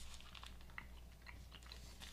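Faint chewing of a chocolate almond-butter protein bar (Keto Fit Bar), with soft scattered clicks of mouth noise over a steady low hum.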